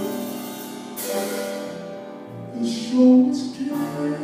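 Live jazz ballad: a piano plays sustained chords, and a man's voice comes in singing a phrase about two and a half seconds in, the loudest part.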